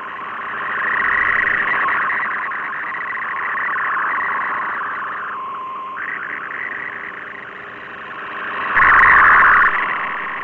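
MFSK64 digital picture signal from the Shortwave Radiogram broadcast, received over shortwave: a dense warbling band of data tones between about 1 and 2 kHz that swells and fades with the shortwave path. Part of the band drops out briefly about five and a half seconds in, and a louder, wider burst comes about nine seconds in.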